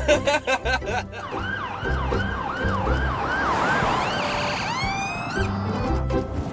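Ambulance electronic siren in a rapid yelp, its pitch sweeping about three times a second, switching near the end to a quicker burst of rising sweeps. Background music with drum hits plays under it, mostly in the first second.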